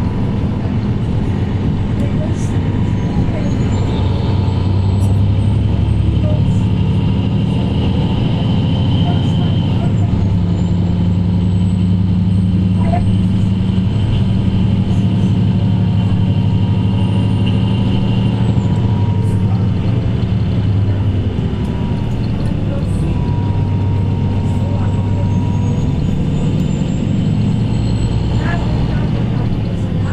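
Interior sound of a Mercedes-Benz Citaro C2 K city bus under way: its OM936 straight-six diesel drones steadily through a ZF Ecolife automatic gearbox, with a faint high whine. The engine note strengthens through the middle stretch, then eases off near the end.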